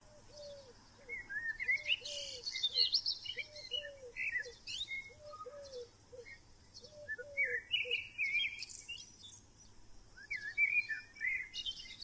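Birds chirping, several high calls overlapping, with a lower call of three falling notes repeated about once a second until about eight seconds in.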